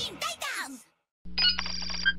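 The last sung notes of a rock theme song fade out, followed by a short gap. About a second in, a steady low electronic hum starts with high electronic beeps, a computer-typing sound effect as text types onto the screen.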